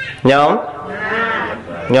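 A man's voice: a loud drawn-out call that falls in pitch just after the start, quieter voiced sound through the middle, and a second falling call at the end.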